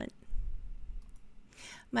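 Soft clicks and a low bump in a pause between words, then a quick breath in just before speech resumes near the end.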